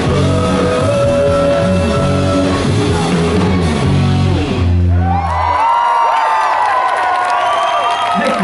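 Live rock band with bass guitar, electric guitar and drums playing the last bars of a song, ending on a held final chord that stops about five and a half seconds in. The crowd then cheers and whoops.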